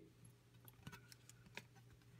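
Near silence: room tone with a few faint, short clicks of a CD being handled.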